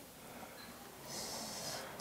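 A person's short breath through the nose, a soft hiss lasting under a second that starts about halfway through, over a quiet room.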